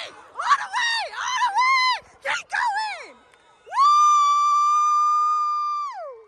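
A spectator's high-pitched cheering screams: several short shouts, then one long held scream of about two seconds that falls off at the end.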